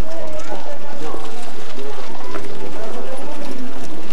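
Crowd chatter: many people talking at once, indistinctly, while walking along.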